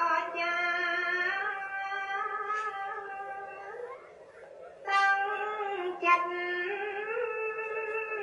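A single voice singing in long held, gently gliding notes, like a devotional chant set to music; it fades to a short pause about four seconds in and starts again a second later.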